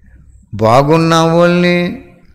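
A man's voice draws out the syllable "baa" on one steady pitch for about a second and a half, chant-like, starting about half a second in.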